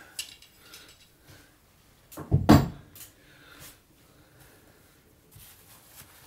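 A single loud clunk of a metal workshop tool being set down, with a fainter knock about a second later, amid quiet handling.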